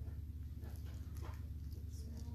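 A pause in a talk: quiet room tone with a steady low hum and a few faint ticks.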